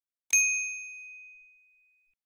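A single bright ding, a bell-like chime sound effect that strikes sharply and rings out, fading over about a second and a half. It marks the click on a notification-bell icon.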